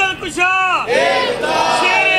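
A man's voice, amplified through a microphone, singing a drawn-out melodic phrase. It arches up and down, then holds one long note through the second half.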